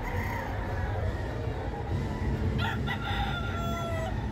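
Gamecock crowing: one long crow starting about two and a half seconds in and tailing off near the end, over a steady low rumble.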